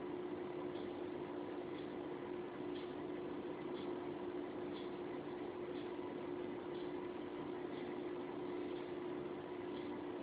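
Steady low background hum with a faint, regular tick about once a second.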